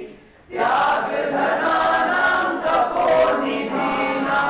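A group of people singing together in unison, a classroom choir of mixed voices; they break briefly at the start and take up the next line about half a second in.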